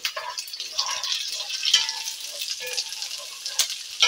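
Sliced onions and green bell pepper strips sizzling and crackling in a little hot oil in a nonstick pan while being stirred with a wooden spoon, with one sharp click about three and a half seconds in.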